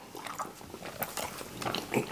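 A person chewing a piece of black licorice candy: soft, wet mouth sounds with a few faint clicks.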